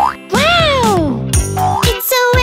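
Children's song backing music with a cartoon boing sound effect: a pitch that swoops up and then slides back down in the first second, with shorter upward swoops around it.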